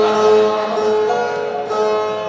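Two Brazilian violas played together in an instrumental passage with no singing: held notes ring on, changing pitch a few times.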